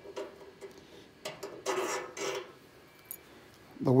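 A stainless steel washer and small metal parts being handled and slid onto a pedal car's steel front axle: a few light clinks and rubs spread over the first two and a half seconds.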